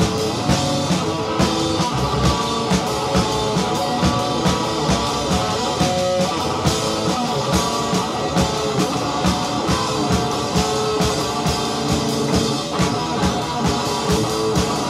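Live punk rock band playing an instrumental passage: electric guitar and bass over a drum kit keeping a steady, driving beat, with no vocals heard. It is a raw live tape recording.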